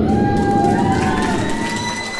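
Crowd cheering as the dance music stops: a loud din with several long, high-pitched screams rising over it.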